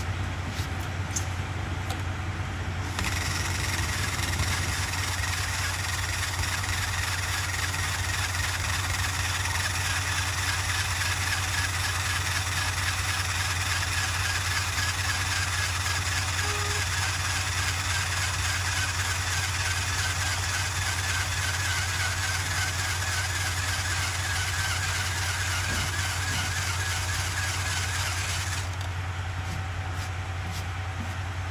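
Handheld power tool spinning a rubber eraser wheel against painted RV fibreglass, stripping leftover mask adhesive. It starts about three seconds in, runs steadily, and stops near the end, over a steady low hum.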